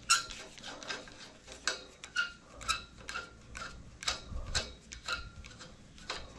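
Irregular metallic clicks and clinks, about two a second, each with a short bright ring, from steel scaffolding tubes being handled.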